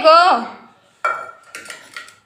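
A steel saucepan clanks against the concrete floor about a second in and rings with a steady metallic tone. A few lighter metal knocks follow as it is handled.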